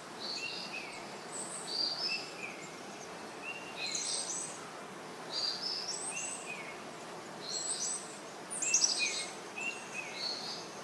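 Birds chirping in short, stepped high calls that recur every second or two over a steady background hiss, with a busier flurry of quick falling notes about nine seconds in.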